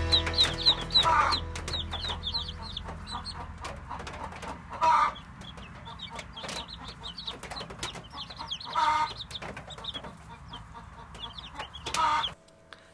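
Newly hatched chicks peeping: a continuous stream of short, high chirps, several birds at once, with a louder, lower call about every four seconds.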